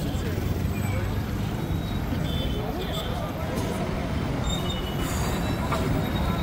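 Street traffic ambience: a steady low rumble of passing vehicles with faint voices in the background.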